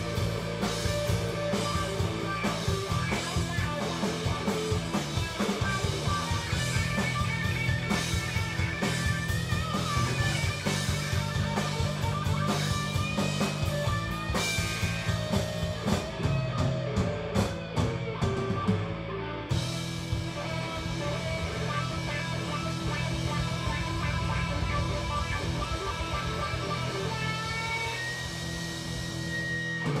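Live rock band playing an instrumental passage on electric guitars, bass and drum kit. About two-thirds of the way through the cymbals and drum hits stop and the guitars ring on with held notes.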